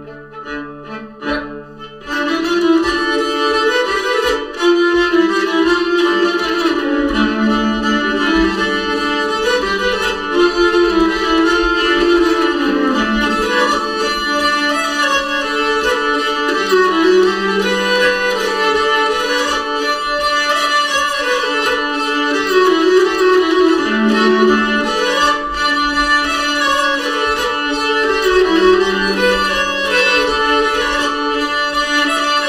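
Two nyckelharpas, Swedish keyed fiddles, bowed in a duo playing a Rheinländer dance tune. After a quiet low start, the full melody comes in about two seconds in and runs on steadily, with a rich, ringing tone from the instruments' resonance strings.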